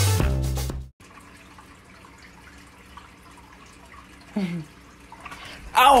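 Music with a drum beat that stops abruptly about a second in, followed by the faint steady trickle of an aquarium's hang-on-back filter pouring water back into the tank. A short downward-sliding sound comes about four seconds in, and a man's loud exclamation starts at the very end.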